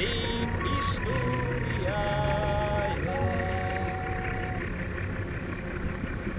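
Steady low rumble of a river ferry under way, with a slow tune of held notes playing over it that stops about two-thirds of the way through, leaving only the rumble.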